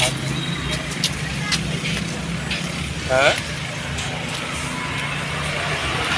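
Street traffic noise with a vehicle engine running steadily nearby, a few small clicks, and a short exclamation about halfway through.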